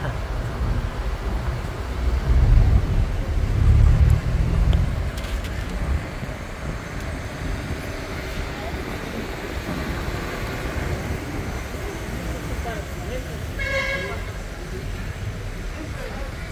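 Low rumble of a vehicle driving slowly on a town street, heaviest in the first few seconds and then steady. A short car-horn toot sounds near the end.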